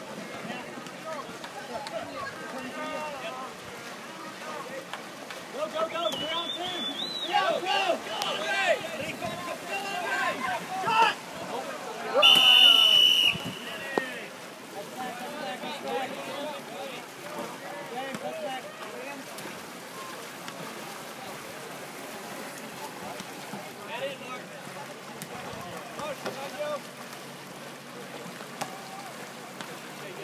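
Canoe polo players calling and shouting across the water, with a referee's whistle blast about halfway through that lasts about a second and is the loudest sound.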